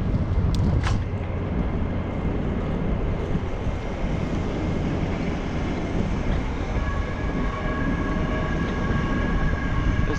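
Wind rushing over the bicycle-mounted action camera's microphone with road rumble as the bike rolls along, two sharp clicks about a second in, and a steady high whine of several tones joining in at about two-thirds of the way through.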